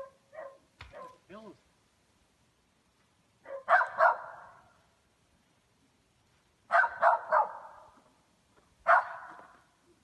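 A dog barking in three short bouts of two or three barks each, about four, seven and nine seconds in, each trailing off in an echo.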